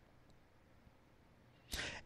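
Near silence, broken near the end by a short intake of breath just before the man speaks again.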